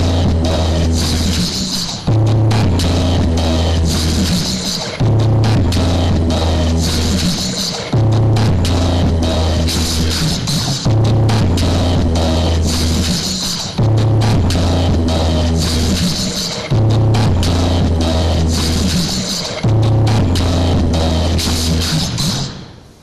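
Bass-heavy electronic dance remix played loud through a rig of stacked small speaker cabinets, a deep bass hit re-striking about every three seconds.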